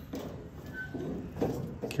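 Lid of a Masterbuilt AutoIgnite 545 charcoal grill being lifted open, over a steady background hiss.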